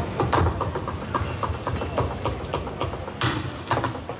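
Tap shoes striking a stage floor in quick, irregular rhythms of sharp clicks and taps, several a second, from a solo tap dancer. A heavier scrape or stomp comes about three seconds in.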